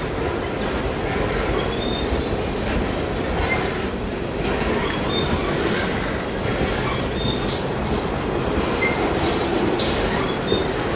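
A slow freight train of refrigerated boxcars rolling past at close range: a steady rumble of steel wheels on the rails, with short, irregular high squeals from the wheels every second or two.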